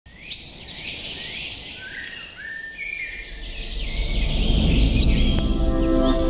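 Songbirds chirping and whistling in quick rising and falling calls, with a low rumble swelling in from about halfway through and steady sustained musical tones entering near the end.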